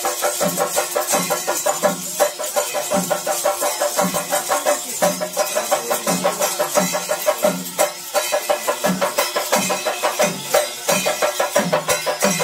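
Loud festival percussion ensemble playing: a deep drum struck in a steady beat, about one and a half strokes a second, under a fast, bright clatter of smaller drums and jingles.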